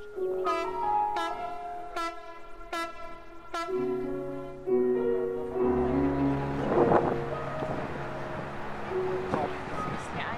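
Background music: bell-like struck notes for about the first four seconds, then sustained chords over a low drone that change pitch every second or so.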